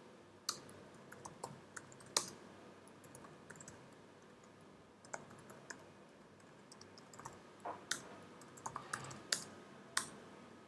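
Faint computer keyboard typing: scattered, irregular keystrokes with occasional sharper clicks as form fields are filled in.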